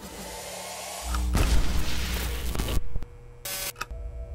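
Logo-sting sound effects: a whooshing sweep, then a deep boom about a second in that holds and cuts off suddenly near three seconds, followed by a short burst of noise.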